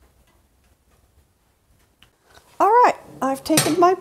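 Near silence for about two and a half seconds, then a woman speaking, with a single sharp metal clank of a cast-iron skillet against the cook stove about three and a half seconds in.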